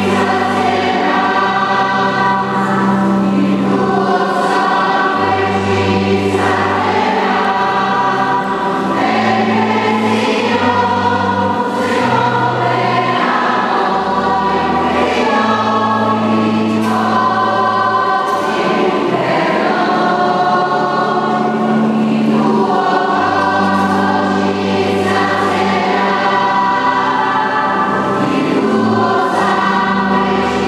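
Church choir singing a slow communion hymn in a reverberant church, over sustained accompaniment bass notes that change every second or two.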